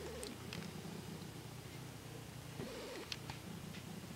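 Dark-eyed juncos giving short, sharp high chip calls: two near the start and three more near the end, over a low background rumble.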